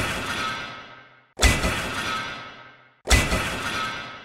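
Outro sound effects: three sudden crashes like glass shattering, about a second and a half apart, each ringing out and fading away before the next.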